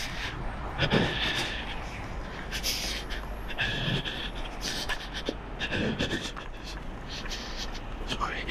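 A person breathing hard, with repeated breaths, while walking, over a steady low rumble.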